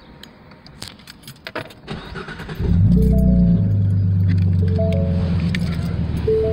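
Clicks and rattling, then about two and a half seconds in the S550 Mustang's 3.7-litre V6 starts, flares briefly and settles into a steady idle through a Flowmaster axle-back exhaust. A repeating two-note chime sounds over the idle.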